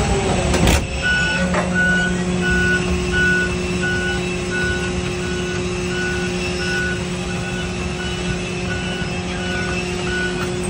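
Cargo-loading equipment's warning beeper sounding about twice a second, over the steady hum of its motors, as a cargo pallet is driven into the freighter's hold. A sharp knock sounds just before the beeping starts.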